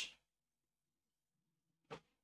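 Near silence between spoken sentences: the last word trails off at the very start, and a brief faint sound comes just before the end.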